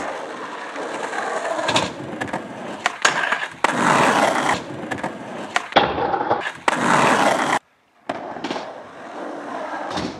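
Skateboard wheels rolling on concrete, with sharp clacks of the board popping and landing and loud scraping as it grinds along a metal handrail. The sound cuts out briefly about three-quarters through, then rolling resumes.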